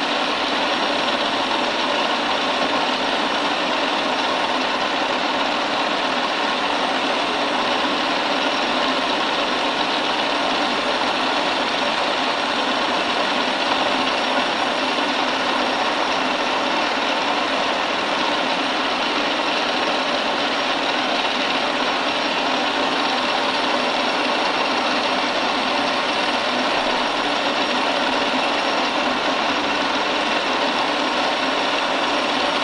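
Milling machine running steadily with a 3 mm end mill cutting a keyway into a brass workpiece in shallow passes of about 0.05 mm. An even, unbroken machine whir with several steady tones.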